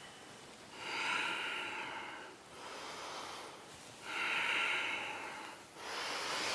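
A person breathing deliberately and audibly in a paced breathing exercise: four long, airy breaths, each a second or two, alternating louder and softer like exhale and inhale.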